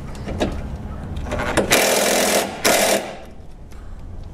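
Cordless impact wrench with a 10 mm socket on an extension hammering at a radiator support bolt in two short bursts, the second one cut off quickly: the tool's battery is dying in the cold.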